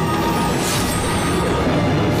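Dramatic film soundtrack: a steady low drone with a swishing whoosh about two-thirds of a second in, a fight sound effect for a blow.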